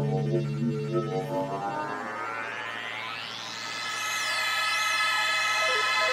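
Instrumental synthesizer music without vocals: a held low chord fades away over the first two seconds while a synth sweep rises steadily in pitch, ending in wavering high synth tones over a sustained chord.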